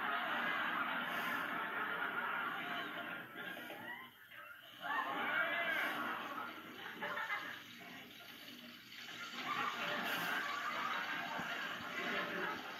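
A sitcom soundtrack playing from a television and picked up across the room: voice sounds and crowd-like noise that swell and fall, with brief dips about four seconds and eight seconds in.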